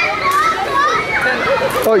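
Children playing and calling out, their high voices rising and falling, with adult voices mixed in.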